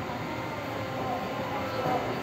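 Steady running noise of a limited express train standing at a station platform, its onboard equipment humming with no movement.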